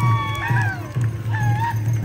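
Powwow drum and singing: a big drum beats steadily several times a second under high, wavering voices whose notes slide and fall.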